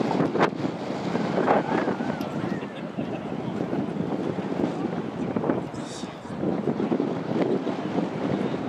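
Wind buffeting the camera microphone, a rushing noise that rises and falls in gusts, with faint voices in the background near the start.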